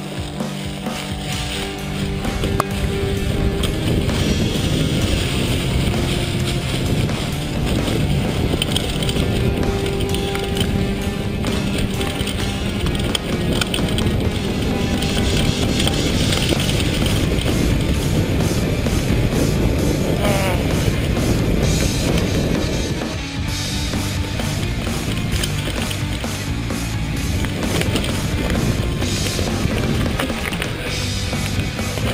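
Music playing over the rolling and rattling noise of a mountain bike riding a dirt trail.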